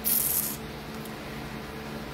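A brief high hiss lasting about half a second, then a quiet pause with a faint steady hum, in a gap between sung phrases.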